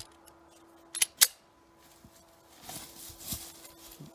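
Handling noise: two sharp clicks about a quarter second apart, then soft rustling over a second or so near the end. A faint steady hum runs underneath.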